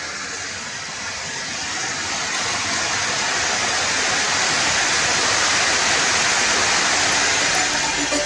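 A steady rushing hiss with no tones or knocks, slowly growing louder over the first few seconds and then holding.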